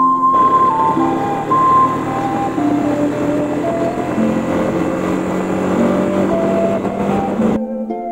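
Road and engine noise of a motorcycle ride under background music with a stepping melody. The ride noise comes in just after the start and cuts off suddenly near the end.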